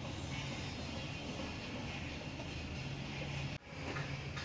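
Steady outdoor urban background noise with a low hum, broken by a sudden cut near the end.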